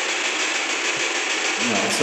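Ghost-hunting spirit box sweeping through radio frequencies: a steady hiss of radio static with a fast, even chatter from the sweep, and no voice coming through it.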